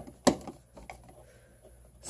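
Two sharp plastic clicks about a third of a second apart, then a few faint ticks: a plastic switch wall plate being pressed and shifted against the wall over the switches.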